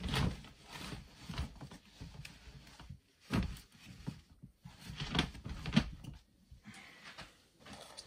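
Handling noise: irregular rustling and a few dull knocks as items are moved about in a plastic storage box.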